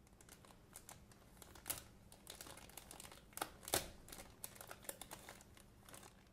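Clear plastic packaging bag crinkling as it is handled and opened and the scissors slide out: a run of irregular crackles, with a few louder ones in the middle.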